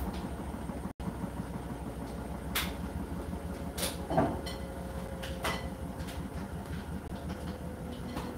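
Hotpoint NSWR843C front-loading washing machine running its wash, the drum turning with laundry and water inside: a steady low rumble and rhythmic churning, with a few sharp knocks as items strike the drum.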